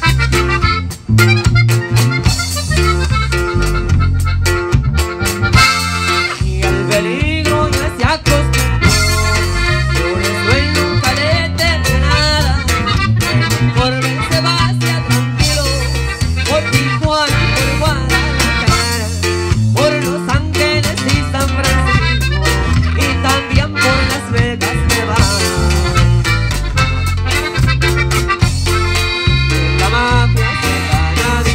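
Live norteño band playing: accordion and saxophone carrying the melody over a stepping electric bass line, drum kit and guitar, loud and steady throughout.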